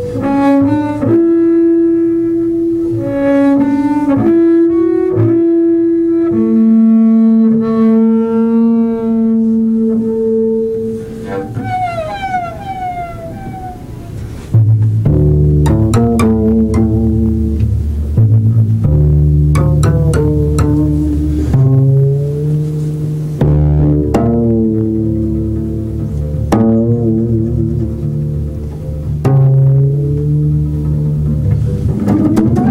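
Solo double bass improvisation. High, held notes come first, then a few sliding notes near the middle. From about halfway there are louder low notes with sharp plucked attacks.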